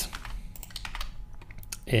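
Computer keyboard typing: a few irregular key clicks.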